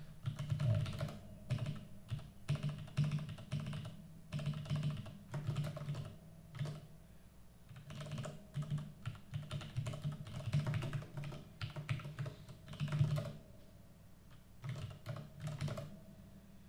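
Typing on a computer keyboard: quick, irregular runs of keystrokes, thinning to a brief lull near the end.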